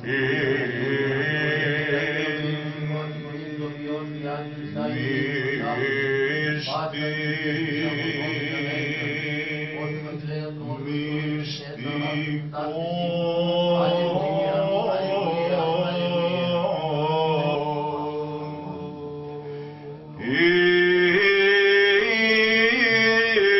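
Byzantine chant from Orthodox church chanters: a melody sung over a steady held low note. It grows louder about twenty seconds in.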